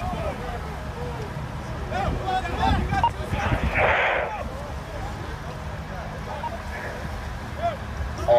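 Scattered distant voices of people on deck and in the water over a steady low rumble, with a short rush of noise about three and a half seconds in.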